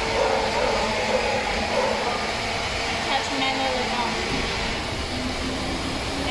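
Steady hum and rush of running factory machinery, even throughout, with faint voices in the background.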